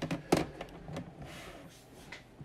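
Hard plastic PSA graded-card cases clicking against each other as they are handled: a sharp click about a third of a second in, then a brief soft rub.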